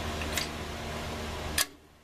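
Spring-loaded throttle linkage snapping back to its stop: a faint metal click about half a second in and another just before the sound drops away near the end, over a steady low background noise.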